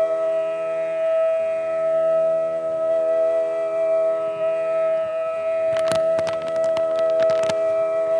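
Bansuri bamboo flute holding one long, steady note over a steady drone. About six seconds in, the accompaniment adds a quick run of sharp strokes lasting a second and a half.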